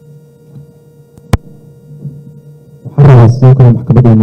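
Steady electrical hum, with a single sharp click just over a second in. Near the end a very loud voice starts through the microphone system.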